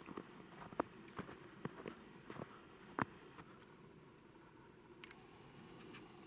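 Faint footsteps on snow, with a scattered, irregular series of short cracks and clicks. The sharpest crack comes about three seconds in.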